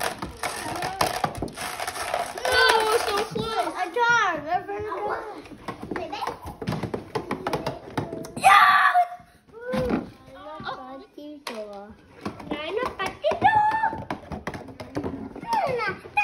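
Young children's voices talking and exclaiming. There is a short, loud burst of noise about halfway through.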